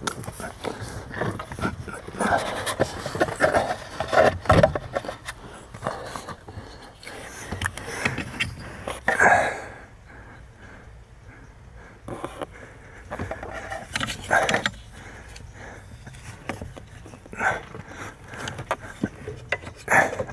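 Hands working plastic clips, brackets and wiring under a VW Golf Mk5 dashboard: irregular rustling, scraping and short clicks that come and go in bunches, with heavy breathing.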